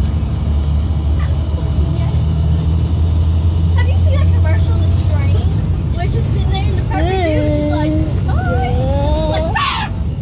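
Steady low rumble of a bus's engine and road noise, heard from inside the cabin. Wordless voices rise over it in the second half.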